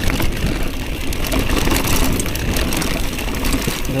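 Mountain bike rolling at speed on a dirt singletrack: a steady rumble of tyres on the ground and wind on the camera's microphone, with many small rattles and clicks from the bike over the rough surface.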